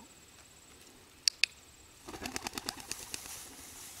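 Two sharp clicks close together about a second in, then a homing pigeon's wings flapping in a fast run of beats as it takes off.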